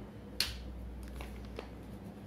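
A single sharp click about half a second in, followed by faint short scratches of a pen writing on paper, over a low steady hum.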